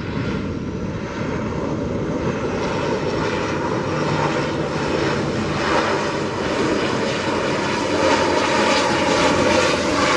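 Engines and propellers of an ATR turboprop airliner running as it rolls along the runway, steadily and growing a little louder toward the end.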